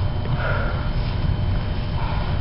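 A person sniffing sharply once, about half a second in, over a steady low rumble of room and microphone noise.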